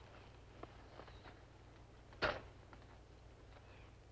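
Low-level quiet with a few faint clicks and one short, sharp knock a little over two seconds in.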